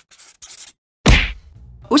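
Quick scratchy marker strokes on paper as lettering is drawn, stopping under a second in. About a second in comes a single loud hit with a deep low boom, fading over about half a second.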